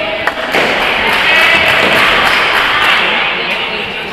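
Spectators in a boxing hall shouting and cheering as the fighters close in, loudest in the middle, with a sharp knock about a third of a second in.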